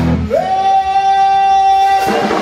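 A singer's voice scoops up into one long, high held note as the band drops out, in a live blues/gospel vocal performance.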